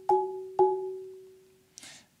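Marimba bars struck twice, about half a second apart, by two mallets held in one hand in the traditional cross grip, each stroke sounding a wide two-note interval together that rings out and fades.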